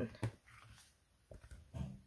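Paperback colouring book being handled and moved aside: a few soft knocks and rustles, with a short low voice-like sound just before the end.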